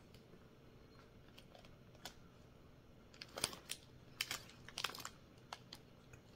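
Short runs of small clicks and crackles from eating a soft ube snack cake and handling its plastic wrapper, mostly in clusters from about halfway in.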